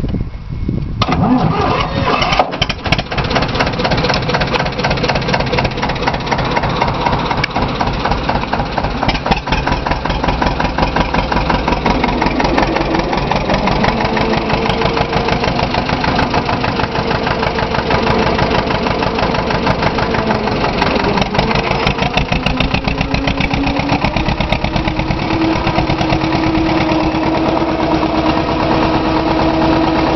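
Deutz F2L 514 two-cylinder air-cooled diesel tractor engine starting about a second in and then running with an even firing beat. Its pitch rises in steps twice later on as the engine speed goes up.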